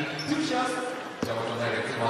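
A basketball bouncing once on the hardwood court about a second in, over indistinct voices in the arena.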